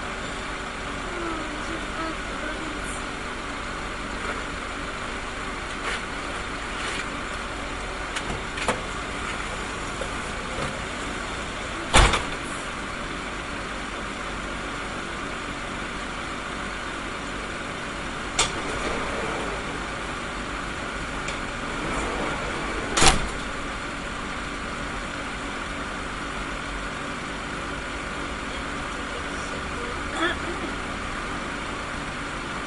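Minibus engine idling steadily, heard from inside the cab. Two loud, sharp knocks come about eleven seconds apart, with a few fainter clicks between them.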